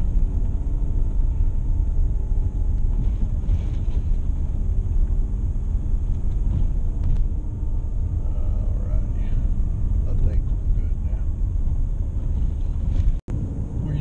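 Steady low rumble of a vehicle driving on a gravel road, engine and tyre noise heard from inside the cabin. The sound cuts out for an instant near the end.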